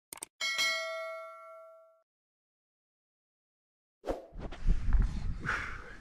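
A quick pair of clicks, then a bright bell ding sound effect, the subscribe-bell notification chime, that rings and fades away over about a second and a half. About four seconds in, low wind noise buffeting the microphone starts.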